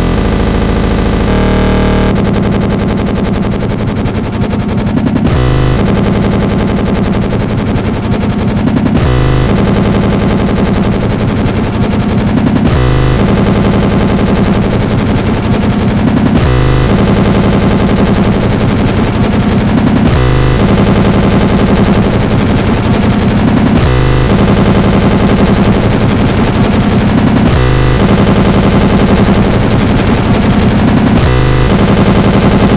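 Harsh noise music: a loud, dense distorted wall with very rapid stuttering pulses, looped so that it breaks and restarts about every three to four seconds.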